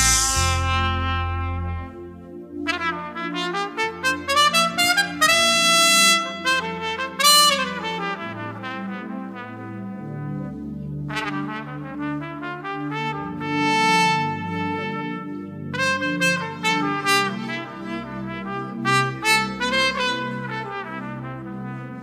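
Trumpet playing a slow, peaceful melody of long held notes that slide smoothly from one to the next, over a soft band accompaniment with a low bass line.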